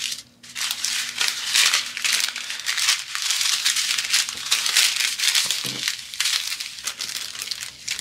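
Small plastic bags of diamond-painting drills being handled and moved, the plastic crinkling almost continuously.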